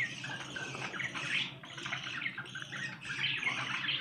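A cage of budgerigars chattering together: many short chirps overlapping in a busy, unbroken twitter.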